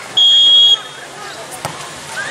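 A referee's whistle gives a single short, steady blast of about half a second, the signal for the server to serve. About a second later comes a short sharp knock.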